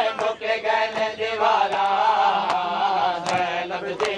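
A Punjabi noha (Shia lament) chanted by voice, with sharp slaps of mourners beating their chests (matam) landing in a regular beat under it.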